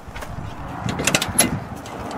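Pickup truck door being unlatched and swung open: a quick cluster of sharp clicks and clacks from the handle and latch, about a second in.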